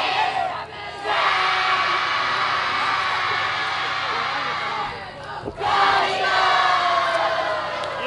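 A yosakoi dance team huddled in a circle shouting a group cheer in unison: two long held shouts, one starting about a second in and one near six seconds, the second with a slowly falling pitch.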